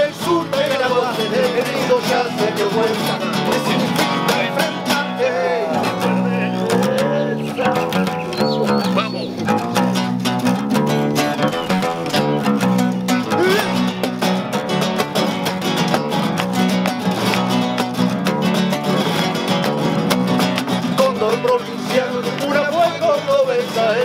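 A song with acoustic guitar accompaniment: a male voice sings at the start and again near the end, with an instrumental guitar passage between.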